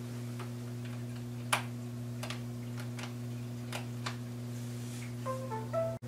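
A handful of sparse clicks from a laptop's touchpad and keys as the PAR meter software is launched, over a steady low electrical hum; a short run of electronic tones sounds near the end.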